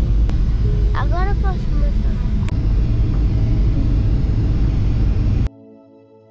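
Steady low rumble of airliner cabin noise from the engines and airflow, heard from inside the cabin, with a brief voice about a second in. The rumble cuts off suddenly near the end, giving way to soft music.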